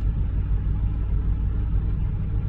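Vehicle engine idling, heard from inside the cab as a steady low rumble.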